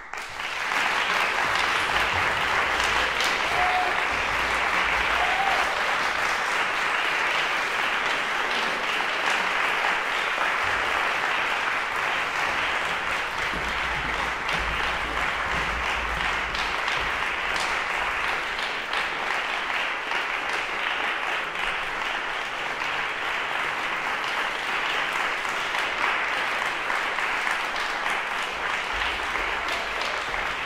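Concert audience applauding: it breaks out all at once after a silence and then keeps on at an even level.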